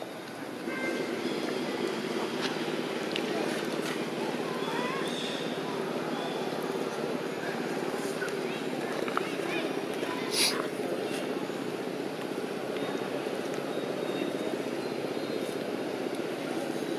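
Steady outdoor background of a low engine-like drone with voices murmuring under it, and one brief sharp high-pitched sound about ten seconds in.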